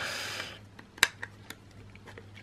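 Fingernails scraping and picking at a hard clear plastic trading-card case while trying to pry it open: a brief rustling scrape, then a few small sharp clicks.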